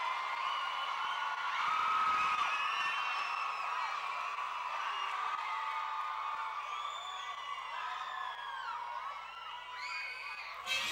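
Audience cheering, with many high-pitched whoops and screams overlapping.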